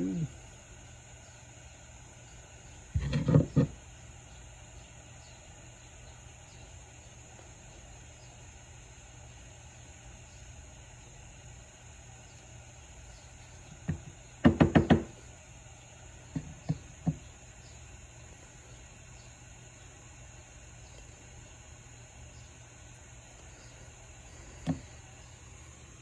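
Pliers and small tools knocking and tapping against a powder-paint jar and a wooden workbench while jig heads are dipped in paint powder. There is one loud knock about three seconds in, a quick run of taps around the middle, and a few light clicks after, over a faint steady hum.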